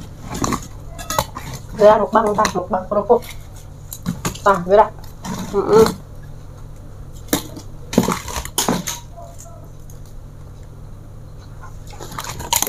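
Hands handling large crisp kerupuk crackers and picking food off a ceramic plate: scattered clicks, light clinks and crackles, quieter over the last few seconds.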